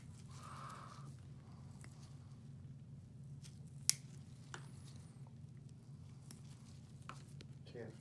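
Podiatry nail nippers cutting a thick fungal toenail: a few sharp snips, the loudest about four seconds in, over a steady low hum.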